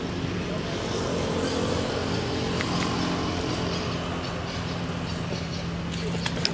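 A motor vehicle engine running steadily nearby, heard as a continuous low hum that drifts slightly in pitch.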